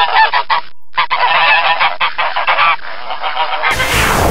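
A flock of geese honking, many calls overlapping, with a brief break about three-quarters of a second in. Near the end a rushing whoosh sound effect cuts in over it.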